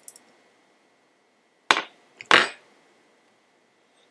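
A small metal pick clinking against a bicycle hub while prying out the hub's gasket: a faint click at the start, then two sharp knocks about half a second apart, roughly halfway through.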